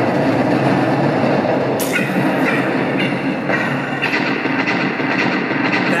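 Small board wheels rolling over a hard surface in played-back skate footage: a steady rolling rumble with a few sharp clacks about two to three and a half seconds in.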